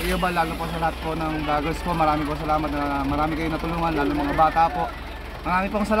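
A man talking, over a steady low rumble.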